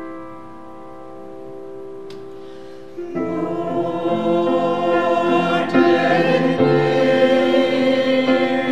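A sustained grand piano chord fades away, then a small mixed choir comes in about three seconds in, singing to piano accompaniment.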